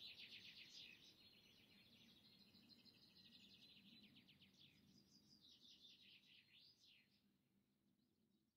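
Faint birdsong: rapid chirping trills, then quick rising and falling whistled notes, fading away near the end.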